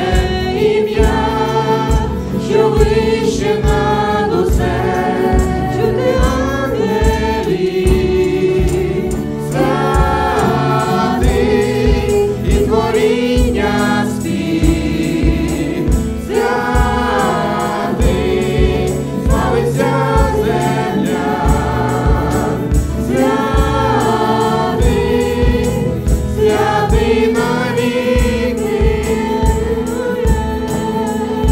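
Church worship band performing a worship song in Ukrainian: a man and two women singing together into microphones over acoustic guitar and drums keeping a steady beat.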